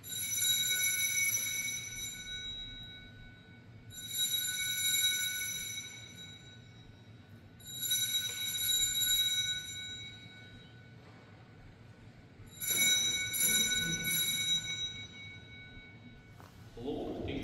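Altar bell rung four times, about four seconds apart, each ring sounding out for two to three seconds before dying away. It marks the elevation of the chalice at the consecration of the Mass.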